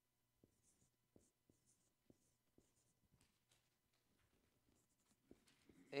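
Faint strokes of a marker pen writing on a board: a series of short scratches and taps as letters are drawn.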